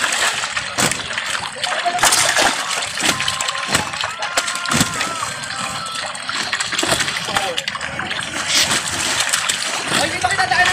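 Repeated irregular splashing and sloshing of water around a net full of freshly harvested milkfish being handled by men standing in the pond, with voices in the background.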